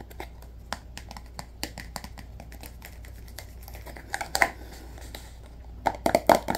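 Irregular small clicks and taps from hands handling a small object close to the microphone, with a louder cluster of taps about four seconds in.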